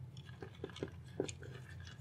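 A pre-filled all-in-one liquid cooler being tilted and handled: about five faint soft clicks in the first second or so, with coolant sloshing faintly inside the sealed loop.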